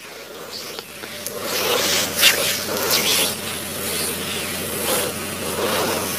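Hands rubbing and massaging an oiled bare back, an irregular rough rubbing noise with a few brief louder scrapes. A faint steady low hum runs underneath.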